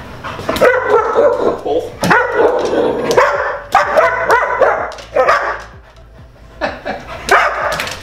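Two dogs barking in bouts as they play rough with each other, with a person laughing.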